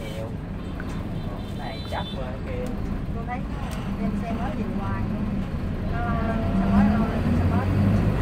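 A coach's engine heard from inside the passenger cabin, its low steady drone growing louder through the second half as the bus drives on from the junction, with people talking over it.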